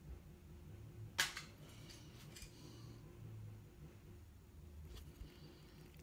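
Quiet handling at a painting desk: one sharp click about a second in and a few fainter ticks later, over a low steady hum.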